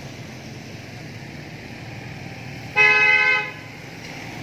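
A vehicle horn gives one short toot about three seconds in, over steady street background noise.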